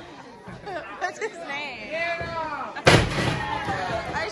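A single loud slam about three seconds in: wrestlers' bodies hitting the canvas-covered boards of a wrestling ring, with ringside voices around it.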